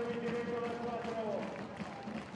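Volleyball-arena crowd noise with one long held note that sags in pitch and stops about one and a half seconds in, leaving a low murmur.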